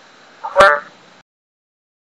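One short syllable from a synthesized Chinese text-to-speech voice, reading the character 問 (wèn) of 詢問, about half a second in.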